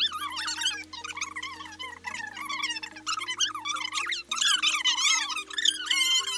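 Background music with a steady bass line that changes chord about every two seconds, with high-pitched, sped-up-sounding voices chattering over it.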